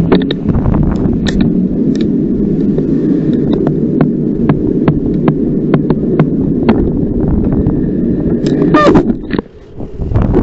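Wind buffeting a bicycle-mounted camera's microphone as the bike rides through traffic, with frequent clicks and rattles. Near the end a short rising squeal, typical of bicycle brakes, comes as the bike pulls up, and the rumble drops away as it stops.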